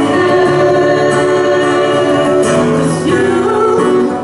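Live vocal duet with acoustic guitar: a woman and a man singing into microphones over an acoustic guitar, played loud and steady through a PA.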